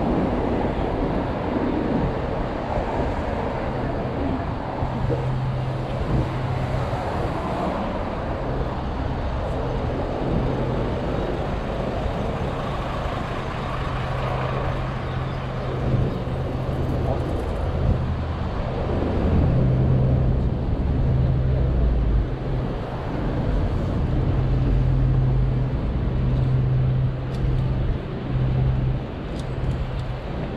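City street traffic: motor vehicle engines running close by, with a steady low engine hum that comes and goes over a constant roar of road noise.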